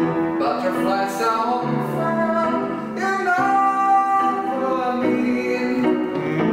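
Kurzweil digital piano playing sustained chords and melody notes, with a wordless sung line over it.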